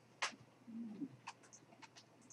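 Faint pause in a quiet room: a soft click about a quarter second in, then a brief low hum that rises and falls, like a murmured "mm", and a few faint ticks.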